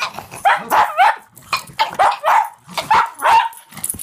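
Pug barking and yipping excitedly, a rapid string of short high calls about three a second, right after being asked if it wants to eat.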